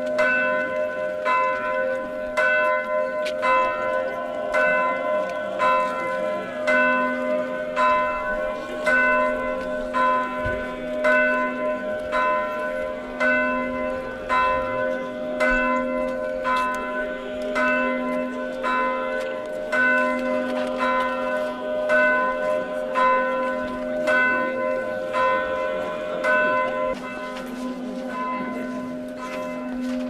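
Several church bells ringing together in a continuous festive peal: smaller bells struck quickly, about three strokes every two seconds, over a lower bell that sounds roughly every two seconds.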